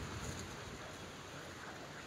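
Faint, steady outdoor background noise, an even hiss with no distinct events.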